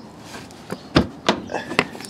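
A few clicks and knocks from a fifth wheel's basement storage compartment door and its latch being worked by hand, the heaviest thump about a second in.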